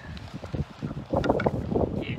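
Gusty wind buffeting the microphone in low, uneven rumbles, with stronger gusts in the second half.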